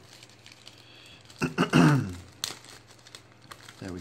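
Clear plastic bag crinkling as it is cut open with scissors and a decal sheet is worked out of it, with a sharp snip-like click a little past halfway. A brief wordless voice sound, falling in pitch and louder than the plastic, comes just before the click.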